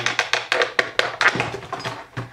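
Quick, irregular clicks and taps of a cardboard cologne gift case and the bottle inside it being handled as the case is opened and the bottle taken out.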